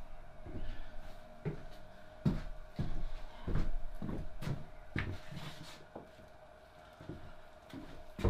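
Footsteps on a wooden workshop floor and a series of irregular knocks of metal parts and tools being set down and picked up, thinning out in the last couple of seconds, over a faint steady hum.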